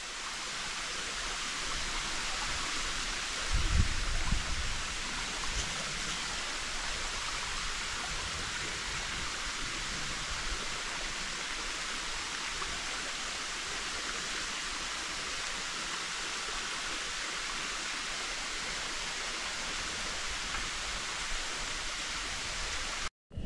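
Steady rushing outdoor ambience, an even hiss with no distinct events, with a brief low rumble about four seconds in.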